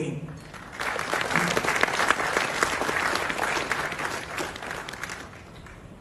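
An audience applauding in a hall. The clapping builds about a second in and dies away near the end.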